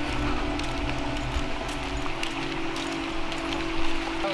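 Soft background music with steady held low notes, over a fluctuating low rumble of wind and handling on a walking camera's microphone, with faint scattered ticks of footsteps.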